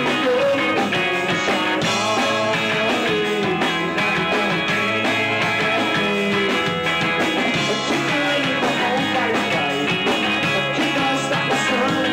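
Rock band playing live, with electric bass guitar and drum kit, loud and steady throughout.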